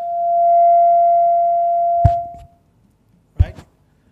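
A steady high-pitched howl of microphone feedback through the hall's PA, swelling to its loudest about half a second in and fading out after about two seconds. A short thump sounds about two seconds in.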